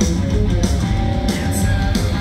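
A heavy metal band playing live: distorted electric guitars, bass and drums at full volume, with cymbals struck at a steady pulse.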